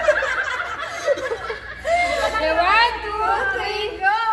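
Several women chattering and laughing together, their voices overlapping, with rising high-pitched exclamations in the second half.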